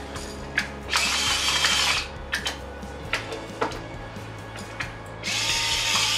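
Hand-twisted salt and pepper grinders seasoning a bowl: two bursts of grinding about a second long each, one about a second in and one near the end, with a few light handling clicks between.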